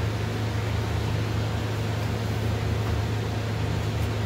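Ultrasonic cleaner tank running, a steady low hum under an even hiss.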